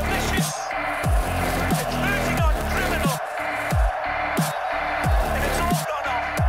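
Electronic background music with a steady beat of deep, falling bass hits, about three every two seconds.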